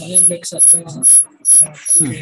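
A person's voice coming through an online call, garbled, with a high-pitched clicking artifact repeating about two or three times a second.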